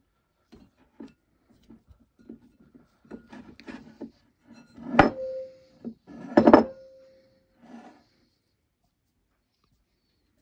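Soft bread dough being stretched and handled in a glass bowl, with scattered quiet squelches and rubs. About halfway there are two sharp knocks a second and a half apart, each followed by a short ringing tone from the glass bowl striking the wooden table.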